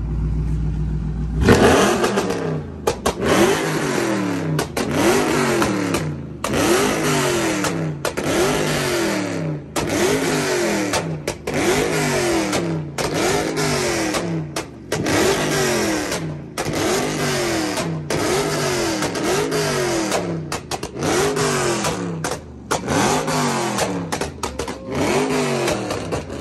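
Dodge Charger's exhaust idling, then revved hard over and over from about a second and a half in, each rev rising and falling roughly every second and a half with a sharp cut between revs: revving to make the exhaust shoot flames.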